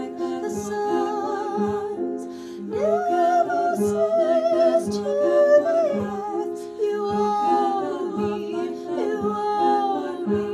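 Three unaccompanied women's voices, soprano, mezzo-soprano and alto, singing a contemporary classical piece in held chords. About three seconds in, a higher voice rises above the others and holds a line with vibrato for about three seconds.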